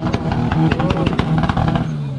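A car engine held on a two-step launch-control rev limiter, letting out a rapid string of crackling pops over a steady held rev.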